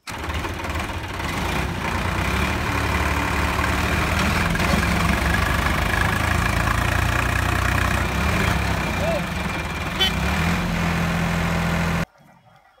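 Diesel tractor engines running steadily while a tractor tows another, stuck in mud, out on a rope. A sharp click comes about ten seconds in.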